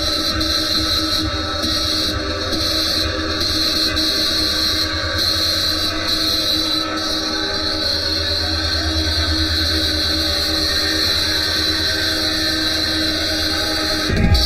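Electronic dance music in a DJ mix during a breakdown: a steady, sustained synth drone over a low rumbling bass, with no kick drum beating.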